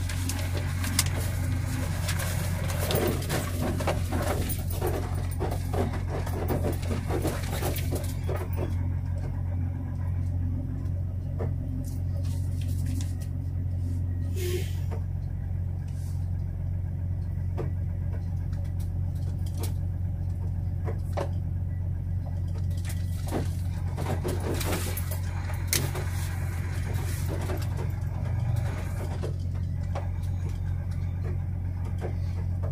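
Semi-truck's diesel engine running at low speed as a steady low drone heard inside the cab, with clattering and rattling from the cab over the rough street during the first several seconds and again near the end.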